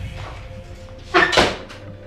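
A short, sharp burst of sound about a second in, over soft background music.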